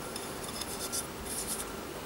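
Faint rubbing and scratching as fingers press an oiled rubber O-ring into the groove of a brass Trangia burner lid.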